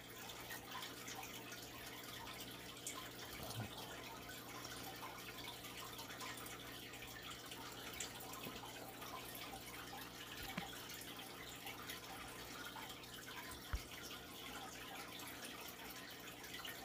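Faint, steady trickle and drip of water from aquarium filters, with a low steady hum underneath.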